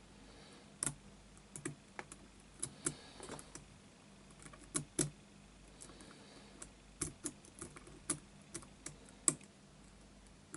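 Lock pick and tension wrench working the pins of a six-pin Yale pin-tumbler cylinder: irregular small metallic clicks and ticks from the pick and the pins. The loudest clicks come about halfway through and near the end.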